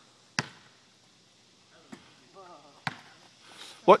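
A basketball bounced on an asphalt driveway: a sharp bounce just after the start and another near three seconds in, with a fainter knock between them.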